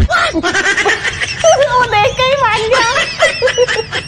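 A woman laughing: high-pitched giggling that breaks into a quick string of short laughs in the second half.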